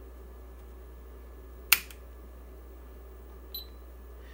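A single sharp click of the bench power supply's toggle power switch being flipped off, then a short faint high-pitched electronic beep near the end, over a steady low hum.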